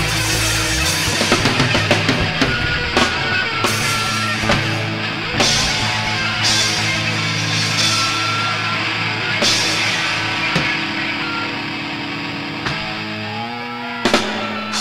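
Punk rock band playing an instrumental stretch with no vocals: electric guitars held over bass and drums, with repeated cymbal crashes. There is a sliding pitch near the end.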